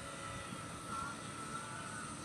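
Steady outdoor background noise with a faint distant hum, with no distinct event standing out.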